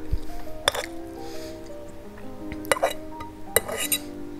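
A fork clinking against a bowl as pasta is scooped up: a handful of sharp clinks, the loudest about three and a half seconds in, over steady background music.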